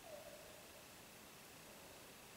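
Near silence: faint room hiss with a steady high whine, and one soft falling tone lasting under a second just after the start.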